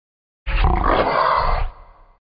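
A loud sound effect, laid over the edit, starts about half a second in, lasts a little over a second, then fades out.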